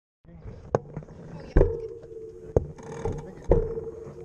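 Sharp knocks and rubbing on a bike-mounted action camera, about one a second, over a steady ringing tone.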